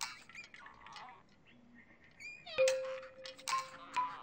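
Sound effects from a children's show soundtrack: short chirping, squeaky calls, then a little past halfway a bell-like struck note that rings on steadily, with a higher note joining near the end.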